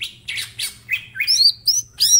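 Male green leafbird (cucak ijo) in full song: a fast run of sharp whistled notes, quick downward sweeps and short rasping bursts, about four a second.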